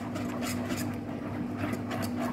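Whisk beating a thick chocolate cream in a nonstick pan, quick rhythmic strokes at about three a second, over a steady low hum.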